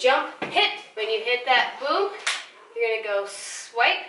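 A woman's voice singing phrases, with a single thump about half a second in.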